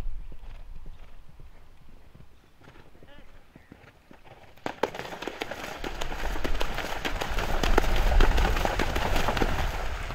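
A galloping horse's hoofbeats on turf, approaching. They are quiet at first, then grow louder from about halfway through and are loudest near the end.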